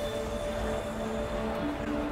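Ambient score from a sci-fi TV episode: long held synth notes over a low rumble, with the notes changing about one and a half seconds in.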